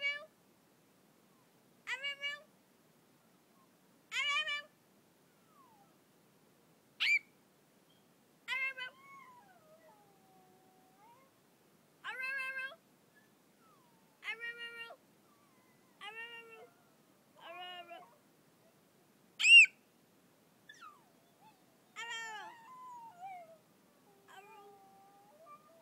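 Small dog howling in short, high-pitched yowls, one about every two seconds, mixed with a person's high-pitched screams that set it off. The loudest call is a sharp, high one a few seconds before the end.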